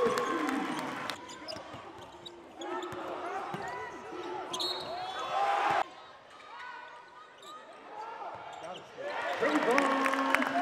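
A basketball game on a hardwood arena court: the ball bouncing, short high squeaks and the hall's echo, with the sound changing abruptly several times where clips are cut together.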